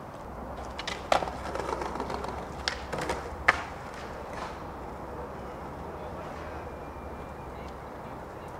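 Skateboard wheels rolling on concrete, with several sharp clacks of the board, the loudest about a second in and again about three and a half seconds in; after that only a steady low background.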